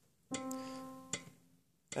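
A single piano note struck about a third of a second in and left to ring, fading away over about a second. It gives the starting pitch for the alto part.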